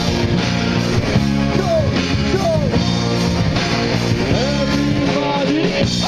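Live ska band playing: electric guitar, bass guitar, saxophone and trombone, with a voice over the music.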